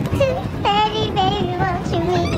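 A high voice singing a few drawn-out, slightly wavering notes of a tune.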